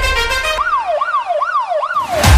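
Background music whose bass drops out about half a second in, giving way to a siren-like sound effect that wails up and down about three times a second until the beat comes back.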